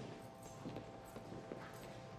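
Faint footsteps on a hard floor, a few soft irregular steps about half a second apart over a low room hum.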